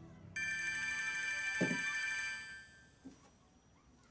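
A phone ringing with a multi-tone ringtone: it starts suddenly, sounds for about two seconds, then dies away as the call is answered. A low thump comes in the middle of the ring.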